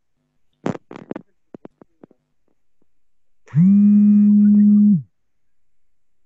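Online call audio breaking up: a few clipped scraps of a man's voice, then a loud, steady buzzing tone held for about a second and a half that cuts off abruptly. This is typical of a caller's connection dropping out.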